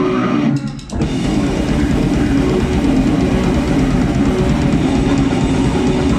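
A live rock band playing: electric guitar, bass guitar and drum kit together. There is a brief break just under a second in, then the full band comes back in and plays on steadily.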